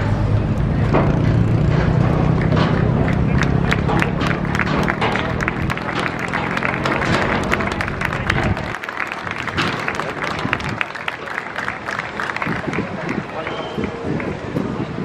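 Crowd applauding, dense clapping over music and voices. A low steady hum underneath stops abruptly about nine seconds in.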